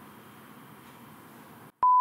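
Faint room tone, then near the end a single short electronic beep: one steady pure tone that starts and stops abruptly, cut in with silence on either side.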